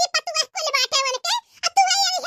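A very high-pitched, squeaky cartoon character's voice talking rapidly in short phrases, with only brief breaks.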